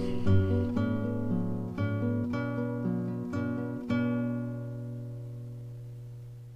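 Acoustic guitar music: a run of picked notes ending on a last note about four seconds in that rings on and slowly fades.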